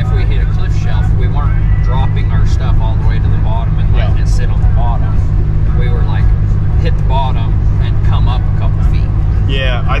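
Steady road and engine drone inside the cabin of a moving car at highway speed, with men's voices talking over it.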